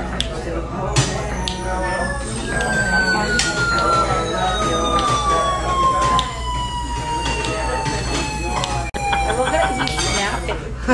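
A drinking straw in a glass sounds one long, high whistling tone that slides slowly down in pitch over about eight seconds, loud enough to draw attention. Background chatter runs underneath.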